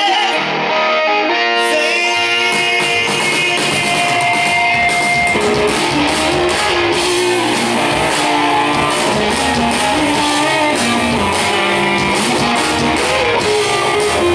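Live indie rock band playing, heard from the audience: electric guitar lines, with bass and drums coming in about two seconds in and the full band playing on at a steady loud level.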